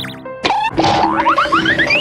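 Cartoon transition sound effect over bouncy background music: a sudden hit about half a second in, then a quick run of short rising whistle-like glides, each pitched higher than the last.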